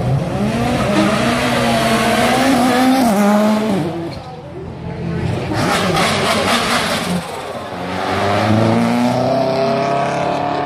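Racing car engines accelerating hard up the hill, the pitch climbing and dropping back with each gear change. The sound dips briefly near the middle and then builds again as a car comes close.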